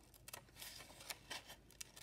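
Scissors cutting paper: faint, irregular short snips as a paper cut-out is cut around its edges.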